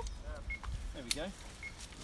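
Quiet, murmured voices in short snatches, with one sharp click about a second in.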